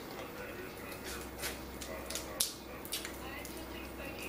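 Crab leg shells cracking and snapping as they are broken apart by hand during eating: a handful of sharp, separate clicks, the loudest about two and a half seconds in.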